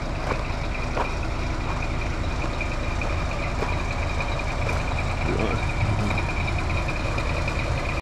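Diesel locomotive engine idling with a steady low rumble, and a steady high-pitched tone running over it.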